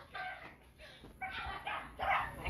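A dog making faint, short vocal sounds, twice.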